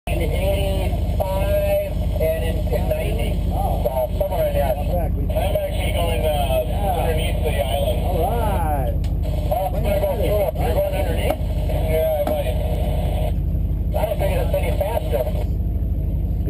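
A fishing boat's engine running steadily, a low drone, with indistinct voices over it.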